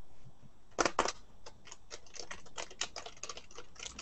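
Computer keyboard typing: a run of quick, irregular key clicks starting about a second in.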